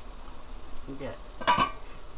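Stainless steel steamer lid settled on the pot rim by its handle, with a short metal clink about a second and a half in, alongside a brief stretch of a voice.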